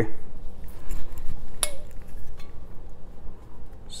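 Grain alcohol being poured from a glass bottle into a glass jar, with light clinks of glass on glass and one sharper clink about one and a half seconds in.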